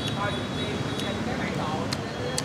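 Busy street eatery ambience: a steady noise of traffic and people talking, with a couple of short light clicks.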